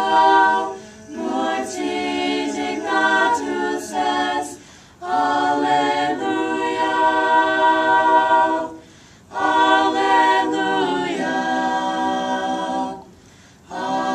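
Small mixed choir of men's and women's voices singing a sacred Latin piece a cappella. The singing comes in phrases with short pauses between them, and a long chord is held in the middle.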